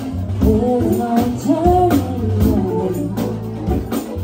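Live funk band playing, with a woman singing lead over keyboards, guitar, bass and regular percussion hits.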